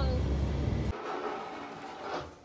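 Low rumble of a pickup truck's cabin while driving through snow, cutting off suddenly about a second in; after that, only quiet room tone.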